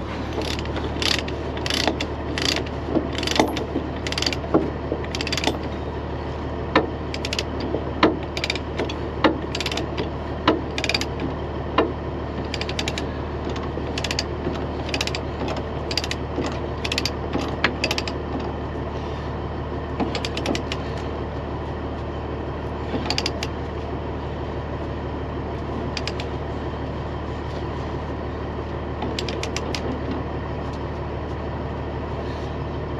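Ratchet chain binder being worked by hand: sharp regular clicks of the ratchet, about one every two-thirds of a second, thinning out to occasional clinks of steel chain after about 18 seconds. A steady low hum runs underneath.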